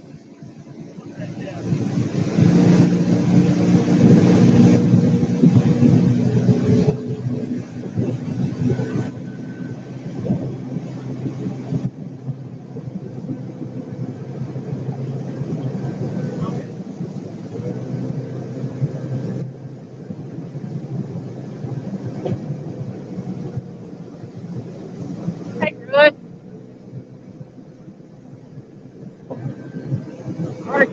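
Boat motor running as the boat moves over the water: loudest for the first several seconds, then running steadily at a lower level. A brief pitched call cuts in near the end.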